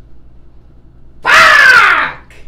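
A man lets out a loud, drawn-out yell a little over a second in, its pitch arcing up and then down.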